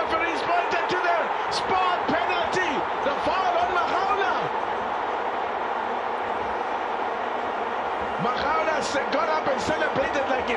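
Stadium crowd noise: many voices shouting and calling at once in a steady din. It eases off a little in the middle and swells again near the end.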